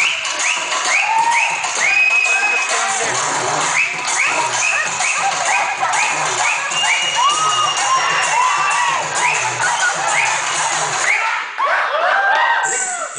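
Dance music played over PA speakers, with an audience cheering, whooping and shouting throughout, many short rising-and-falling yells on top of the music.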